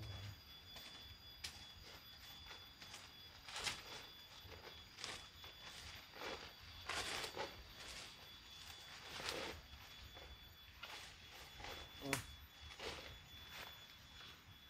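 A small hand hoe chopping and scraping in dry soil and leaf litter, in a series of separate strokes about a second apart, with one sharper knock near the end.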